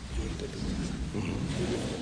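Low rumble with faint, indistinct voices in the room.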